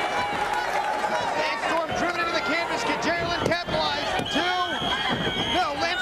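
Wrestling arena crowd yelling and cheering over a pinfall, with the referee's hand slapping the ring canvas for the count.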